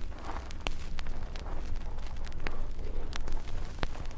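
Radio-drama sound effect of men picking their way down a rocky slope: a few scattered, irregular clicks and crunches of footsteps on loose stones, over the old recording's steady low hum.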